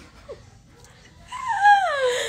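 A single high whine that starts about a second and a half in and glides down steadily in pitch.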